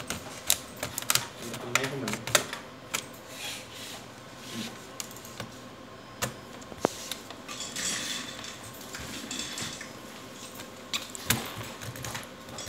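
Plastic snap clips of an HP 245 G8 laptop's case clicking sharply one after another as a plastic card is worked along the seam between the keyboard deck and the bottom cover, with the card scraping along the edge for about a second near the middle.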